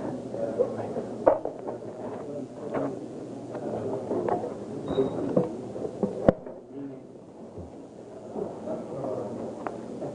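Indistinct low talking in a large room, with scattered sharp knocks and clicks; the sharpest come a little over a second in and about six seconds in.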